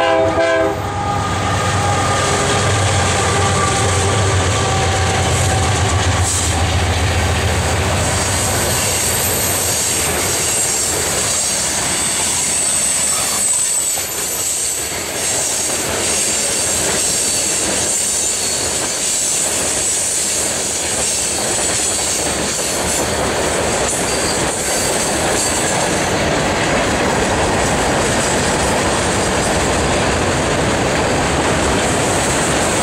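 Freight train rolling past close by: a steady rumble and clatter of freight cars on the rails. A train horn is just ending at the start, and a thin high wheel squeal runs through the middle.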